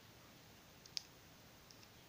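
Near silence, broken by one sharp click about a second in and a couple of fainter ticks.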